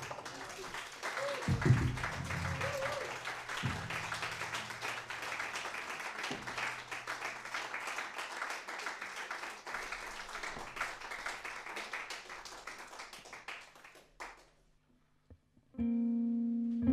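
Audience applause after a jazz tune, running for about fourteen seconds and dying away, with a couple of low plucked string notes under it in the first few seconds. After a brief hush the band starts again with held notes just before the end.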